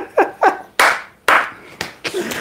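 A man laughing, a few short 'ha's falling in pitch, then three hand claps about half a second apart as the laughter goes on.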